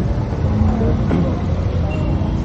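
Street noise: a steady low rumble of motor vehicles, with faint voices in the background.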